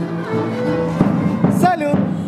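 Live band music with a violin playing long held notes. A voice calls out briefly near the end.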